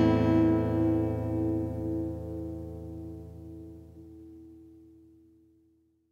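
Acoustic guitar's last chord of the instrumental outro ringing out and dying away over about five seconds.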